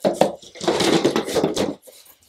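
Products and packaging being handled and moved about. There is a sharp click just after the start, then about a second of rustling and clattering that dies away near the end.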